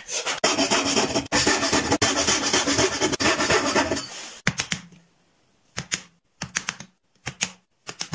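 A small wooden hand plane shaving a board in long, continuous strokes for about four seconds. Then, from about halfway, short crisp knocks in pairs and small clusters as a wooden mallet drives a chisel to chop out dovetails.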